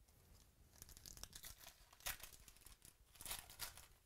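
Foil wrapper of a 2017-18 Panini Select basketball card pack being torn open by hand and crinkled: a run of crackling tears, loudest about two seconds in and again just after three seconds.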